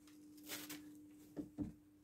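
Faint steady electrical hum from an electric kiln's energised contactor, just switched in by the kiln controller. A brief rustle comes about half a second in, and two soft knocks follow about a second and a half in.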